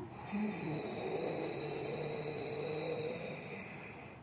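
A woman's long, steady inhalation, the slow Pilates breath taken into the ribs during an exercise, fading out near the end.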